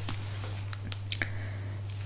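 Low room tone in a pause of a voiceover recording: a steady electrical hum with faint hiss, broken by a few soft clicks.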